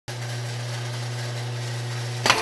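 Industrial sewing machine's motor running with a steady low hum.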